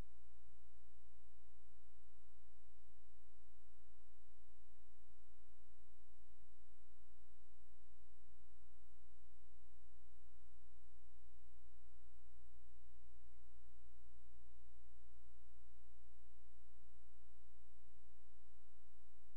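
A steady electrical hum with a constant tone over it, unchanging throughout, typical of noise in a live sound or recording feed.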